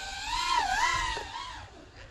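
FPV freestyle quadcopter's brushless motors and propellers whining, the pitch wavering up and down with the throttle, fading out near the end.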